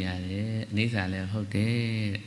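A Buddhist monk's voice reciting in Burmese or Pali in a low, level, chant-like tone, with two short breaths between phrases.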